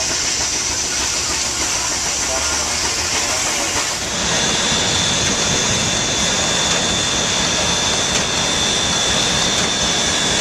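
Steam-driven machinery running with a steady hiss. About four seconds in it changes to a small vertical steam engine driving a generator, with a steady high-pitched whine over the hiss.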